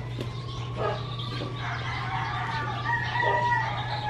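A bird's long drawn-out call starting about halfway through and strongest near the end, over a steady low hum, with a couple of light knocks in the first second.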